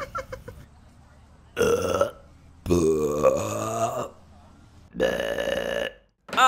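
A quick little giggle, then three long, loud burps, the middle one the longest and rising in pitch.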